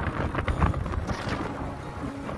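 Wind buffeting the phone's microphone in irregular gusts while riding a motorbike at road speed, with engine and road noise underneath.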